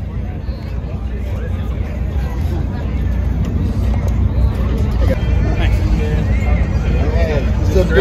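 Dodge Challenger Pro Stock drag car's carbureted V8, fed by twin four-barrel carburetors, idling with a steady low rumble that grows louder toward the end, under crowd chatter.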